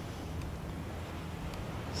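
Low, steady background rumble with no distinct event.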